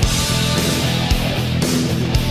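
A 1980s heavy metal band recording: electric guitar over bass and drums, with a few sharp drum hits.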